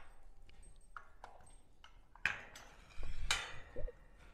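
A cordless circular saw knocking and rattling against a slotted 3-inch PVC holder and a chrome wire shelf as it is hung: two sharp knocks about two and three seconds in, with a short clatter between them, after a couple of quiet seconds.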